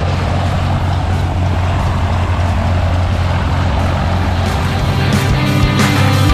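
A small single-engine propeller plane's engine running steadily on the runway, with background music; rock drums and guitar become prominent near the end.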